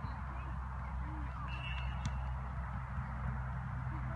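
Outdoor sports-field ambience: faint, distant shouts from players over a steady low rumble, with a short, faint high tone about halfway through.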